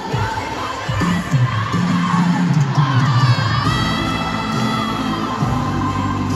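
A packed stadium crowd screaming and cheering over loud amplified live pop music, heard through a phone in the stands.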